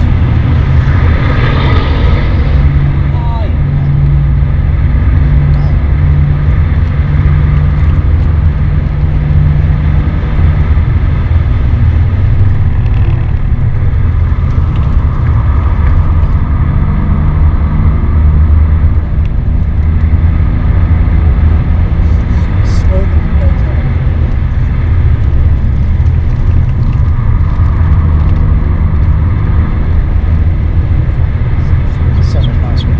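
BMW 530d's straight-six turbodiesel engine working hard on a fast lap, heard from inside the cabin over road and wind noise. Its note holds steady for stretches and shifts in pitch several times.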